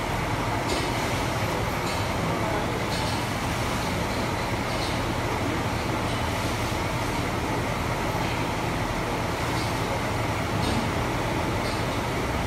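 A steady, even machine-like rumble, unchanging throughout, with faint clicks every second or two.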